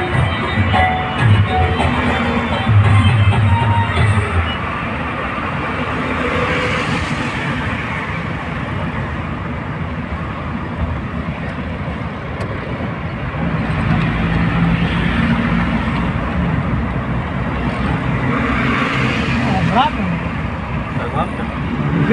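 Road vehicle driving, its steady engine and road noise heard from on board, with music for the first few seconds.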